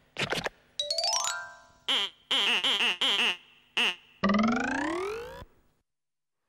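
Cartoon sound effects: a few short pops, then a quick rising run of notes, four bouncy wobbling boings, and a long rising slide-whistle-style glide that cuts off suddenly.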